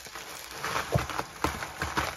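Plastic bubble wrap crinkling and crackling as it is worked out of a tightly packed cardboard box, with a couple of dull knocks against the box.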